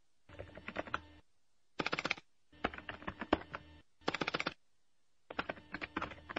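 Computer keyboard typing: five short bursts of rapid key clicks with brief silent pauses between them.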